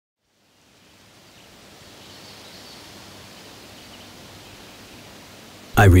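Faint, steady outdoor ambience, an even hiss, fading in from silence in the first second.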